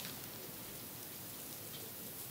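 Thin wooden ear pick scraping and crackling inside the ear canal, a faint close-up scratching over steady hiss, as dead skin is removed from the ear.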